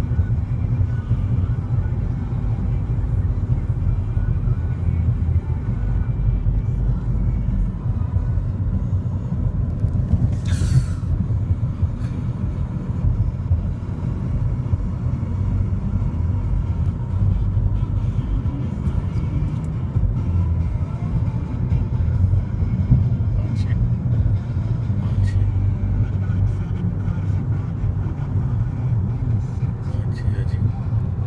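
Steady low rumble of road and engine noise inside a car cabin at highway speed, with a brief hiss about ten seconds in.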